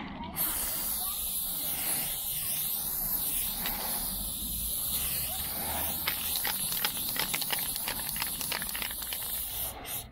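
Aerosol spray paint can spraying orange fill in a long, steady hiss, cut off briefly at the start and at the end as the nozzle is let go. In the second half rapid crackly ticks run over the hiss.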